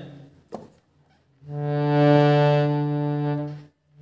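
A single harmonium note held steadily for about two seconds, starting about one and a half seconds in, rich in overtones. It is the reference note on the fifth black key that the tune is pitched on, sounded before the singing starts.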